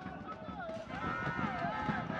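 Football crowd in the stands, many voices chanting and singing together over a steady stadium hubbub.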